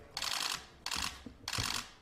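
Camera shutters clicking in three rapid bursts, each about half a second long.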